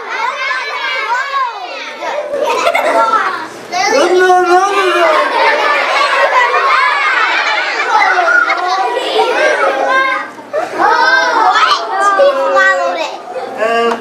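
A group of children calling out and chattering loudly together, many high voices overlapping at once.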